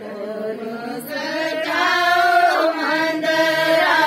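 A group of women singing a Hindu devotional bhajan together in long held lines. The singing builds up over the first second or so, then carries on steadily.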